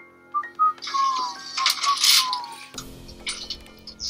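Horror-film soundtrack of an elevator screeching and grinding, with two falling metallic squeals, then a low rumble from a little under three seconds in, all over a sustained music drone. It sounds like the elevator getting stuck.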